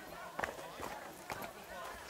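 Footsteps on a stony, gravelly track, with a few sharp crunching steps, under the chatter of many people's voices.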